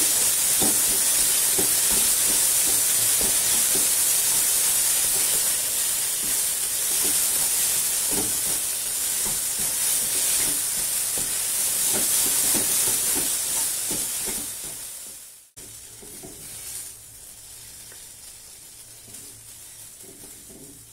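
Ground green-pea filling sizzling in a nonstick frying pan while it is stirred and scraped with a wooden spatula, a steady high hiss with small scrapes. About three-quarters of the way through the sizzle cuts off abruptly, leaving only quiet scraping.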